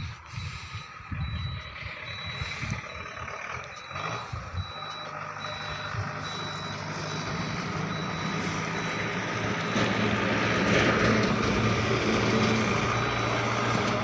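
A truck's reversing beeper giving a high beep about every half second, over a heavy truck's diesel engine running, its sound growing louder from about four seconds in.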